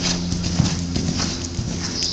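Hoofbeats of a ridden Dutch warmblood gelding on the sand footing of an indoor arena: irregular dull thuds as the horse goes past at speed, over a steady low hum.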